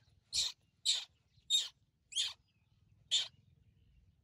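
Baby monkey screaming while a T-shirt is pulled on over its head: five short, high-pitched squeals, roughly half a second to a second apart, stopping a little after three seconds in. The calls are its protest at being dressed for the first time.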